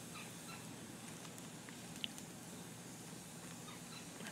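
Wood campfire in a steel fire ring, faintly crackling: a few scattered soft ticks over a low steady background hiss.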